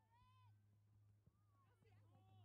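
Faint, distant shouting voices of youth soccer players on the field: one short high call just after the start and several overlapping calls near the end, over a steady low hum.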